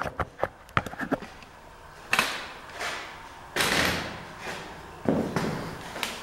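A few light clicks and knocks, then four short scuffing noises about a second apart, the sort of handling and movement noise made while carrying a camera around a workbench.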